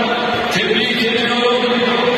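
Loud, steady chant-like voices holding long notes, echoing through a large stadium.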